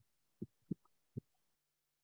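Three faint, short low thumps about a third of a second apart, after which the audio cuts off abruptly to near silence with a faint steady hum.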